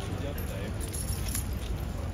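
Metallic jingling of a cavalry horse's bridle, bit and chain tack as the horse lifts its head, a short cluster of clinks about a second in, over background voices and a low outdoor rumble.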